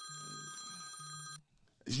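A phone ringing faintly: a steady electronic ring with a low buzz in short pulses, cut off abruptly about a second and a half in.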